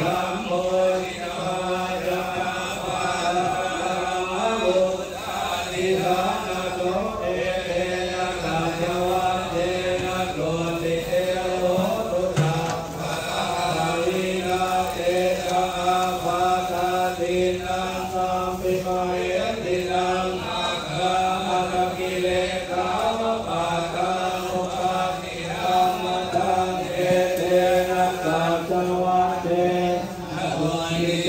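Buddhist chanting: voices reciting in a steady, near-monotone drone, one syllable after another without a pause.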